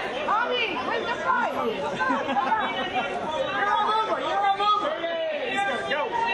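Press photographers calling out over one another: a steady babble of overlapping voices.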